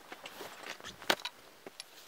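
Light handling noises: a few scattered clicks and knocks, with one sharper click about a second in.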